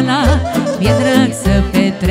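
Live Romanian folk party music (hora/sârbă style): a woman singing with heavy vibrato, backed by violin, saxophone, accordion and keyboard over a steady, quick bass-and-drum beat.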